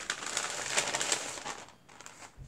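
Paper and packaging rustling and crinkling as a bundle of paper cards and a lace doily are handled, dying away near the end.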